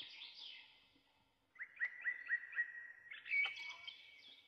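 Birds chirping faintly, with a quick run of short repeated notes in the middle and other chirps around it.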